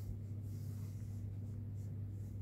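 A steady low hum with faint, soft rubbing and rustling sounds over it.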